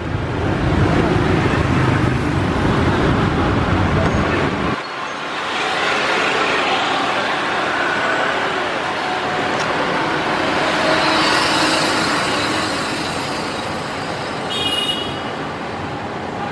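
City street traffic heard from an open electric sightseeing cart: a steady din of motorbikes, cars and buses. A heavy low rumble, like wind on the microphone, runs for the first few seconds and cuts off suddenly. A brief high-pitched beeping comes near the end.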